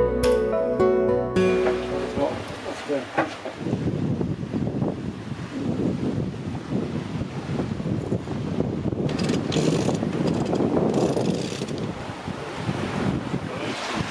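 Background music stops about a second and a half in, giving way to wind buffeting the microphone and water rushing along the hull of an Exploration 52 sailing yacht under sail, with a few clicks soon after the music stops and stronger gusts past the middle.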